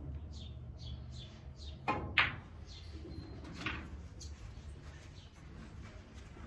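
Snooker shot: the cue tip strikes the cue ball about two seconds in, and a fraction of a second later comes the sharper, louder click of the cue ball hitting the black. A softer knock follows about a second and a half later.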